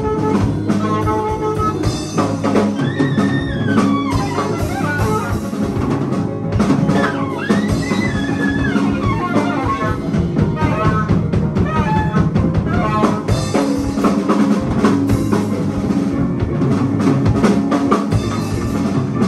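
Free-improvisation jazz quartet playing live: saxophone, piano, bass and a busy drum kit, with high, wavering, sliding lines through the middle of the passage.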